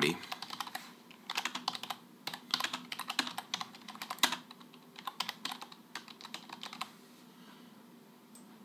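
Typing on a computer keyboard: a quick run of keystrokes that thins out about halfway through and stops about a second before the end.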